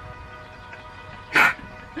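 A single short dog bark about a second and a half in, over faint background music.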